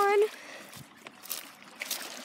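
A child's voice trails off right at the start, then faint outdoor background hiss with a couple of soft scrapes from footsteps on loose rocks, the second near the end.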